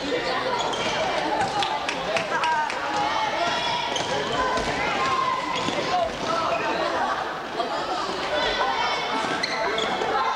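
Basketball game in a gym: a ball bouncing on the hardwood court and players' feet moving, under steady indistinct shouting and chatter from players and spectators.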